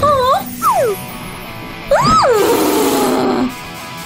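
Wordless cartoon voice sounds, short sliding grunts and a louder rising-then-falling cry about two seconds in, over background music.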